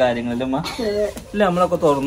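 Speech: a man talking in Malayalam.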